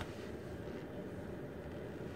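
Steady low background rumble with no distinct sounds in it.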